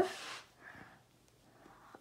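A brief breath just after speaking, then faint room tone; no clear motor sound from the rising barrier arm.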